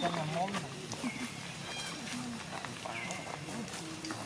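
People talking in the background, with a few short high-pitched calls from a baby long-tailed macaque.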